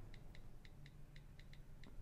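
Faint iPad on-screen keyboard key clicks as a phrase is typed: a quick, even run of light ticks, about five a second.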